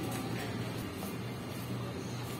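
Music playing, with a steady low hum underneath.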